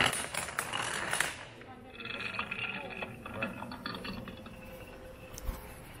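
A long line of dominoes toppling in a chain reaction: a loud clatter of clacks in the first second, then a fast run of lighter, quieter clicks as the chain carries on.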